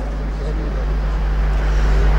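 Steady low electrical hum with background hiss, slowly growing louder, from a microphone and sound-system setup.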